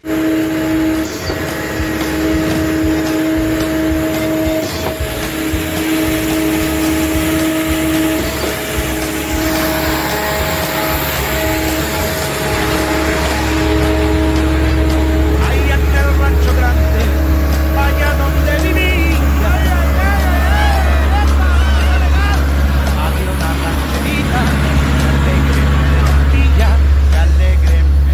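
Concrete mixer truck and shotcrete equipment running. First comes a steady hum with a whine that comes and goes, then from about halfway a deep, steady low rumble that gets louder, with voices over it.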